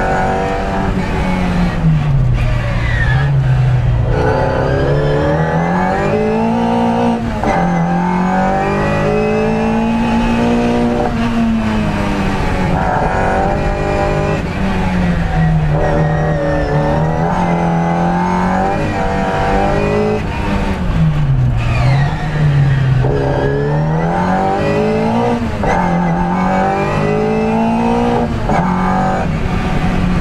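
Classic Mini's A-series four-cylinder engine heard from inside the cabin, driven hard on a hillclimb run. Its note climbs under full throttle and drops sharply at each gear change or lift for a corner, over and over.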